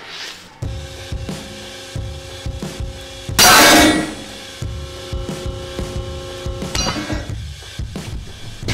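Background music with steady held tones comes in about half a second in. Just past the middle comes one loud, sudden burst of noise lasting about half a second: a rope with an overhand knot tied in it snapping under a pull-to-failure break test.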